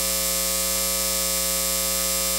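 Steady electrical hum with a stack of overtones under a bright hiss, picked up on an audio line run over unshielded Cat6 ethernet cable with phantom power on. It is interference noise, the result of the cable lacking shielding.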